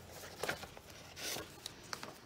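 Soft rustling of paper pages being handled while a needle and thread are pulled through a hand-bound book: a brief rustle about half a second in, a longer swish a little past the middle and a small tick near the end.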